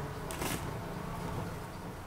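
A short rustle of dry weeds being pulled up by hand, about half a second in, over a faint steady low hum.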